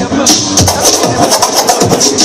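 A DJ's turntable set played loud through speakers: a hip-hop beat with a steady drum rhythm, and the record scratched back and forth by hand so the sound swoops down and up in pitch a few times in the middle.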